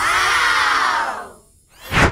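Cheering children sound effect: a 'yay' that rises and then falls in pitch, fading out after about a second and a half. A short whoosh follows near the end.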